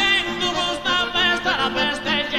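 Sardinian canto a chitarra: a high male voice sings long, ornamented lines with a wide vibrato, accompanied by acoustic guitar and accordion.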